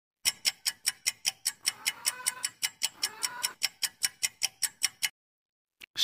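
Clock-ticking sound effect of a quiz answer countdown: quick even ticks, about six a second, that stop about a second before the end.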